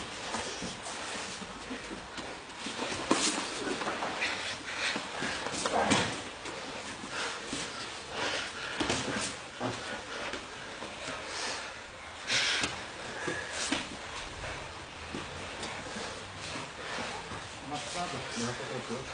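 Grappling on gym mats: irregular scuffs and thuds of bodies moving, with a louder burst about twelve seconds in, and indistinct voices in the room.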